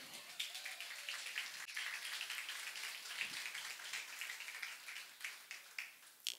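Small audience applauding, a dense patter of clapping that thins out near the end.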